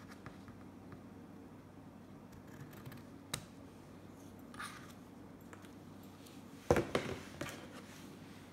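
Scissors cutting through satin ribbon, a few faint snips and one sharper click. Near the end comes a louder knock followed by a few smaller knocks.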